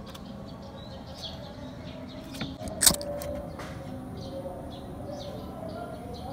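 Small birds chirping repeatedly in the background, with a low steady hum underneath. A single sharp click sounds a little under three seconds in.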